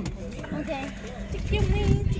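People talking, their voices not clearly worded, with a low rumble that swells up in the last half second.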